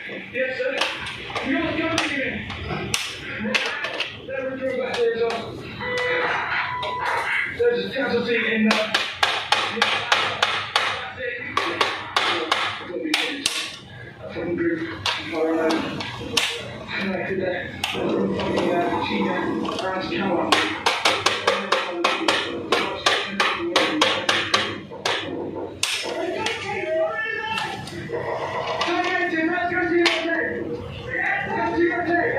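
A man talking throughout, over repeated sharp clicks and taps from hands and a screwdriver working circuit breakers in a metal panel box, with quick runs of clicks in the middle and latter part.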